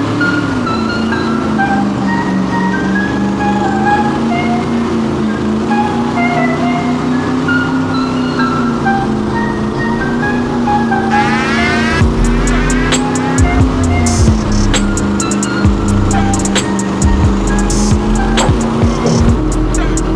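Background music, a melody that picks up a drum beat about twelve seconds in, laid over the steady drone of a 900-horsepower airboat's engine and propeller running at speed. The drone's pitch wavers and steps up near the end.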